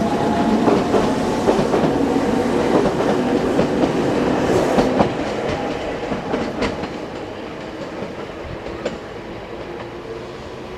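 Nankai Koya Line electric train with Tenku sightseeing cars running along the line, wheels clicking over the rail joints over a steady hum. The sound slowly fades as the train draws away.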